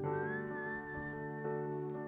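Electronic keyboard holding a sustained chord, with a thin, high whistle-like tone that glides up about half a second in and then holds steady.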